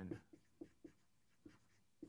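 Faint, short strokes of a dry-erase marker on a whiteboard as words are written, a handful of separate strokes.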